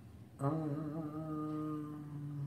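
A man's long, steady closed-mouth hum, the drawn-out "mmm" of an acknowledging "mm-hmm", starting about half a second in.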